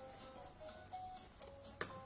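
Quiet background music of soft, held notes, with a single sharp click near the end.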